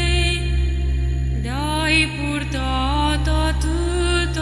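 Romanian Orthodox chant: a voice sings a slow, ornamented melodic line in long held notes over a steady low drone, with a new phrase starting about one and a half seconds in.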